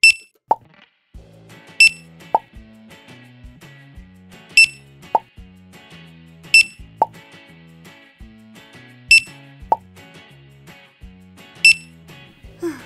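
Six checkout-scanner beeps, one each time an item is scanned, roughly two to three seconds apart. Most are followed half a second later by a short falling plop, over light background music.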